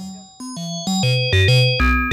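Two SSSR Labs Kotelnikov wavetable oscillators in a Eurorack modular system sound together, played from a keyboard through a matrix switch. They play a quick run of about eight short synth notes that step up and down in pitch. Each note is a steady tone rich in overtones.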